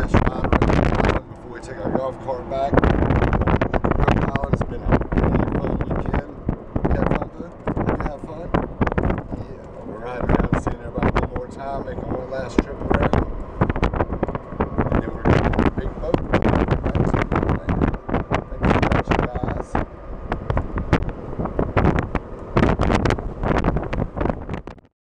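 Wind buffeting the camera microphone in irregular gusts from the motion of an open golf cart, with a man's voice heard now and then through it.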